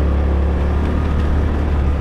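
Small motorcycle running steadily under way, a low, steady hum with road noise.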